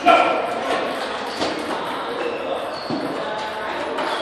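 Busy table tennis hall: voices of players and onlookers, with a louder voice right at the start, and a few scattered clicks of celluloid ping-pong balls striking tables and paddles in the hall's reverberation.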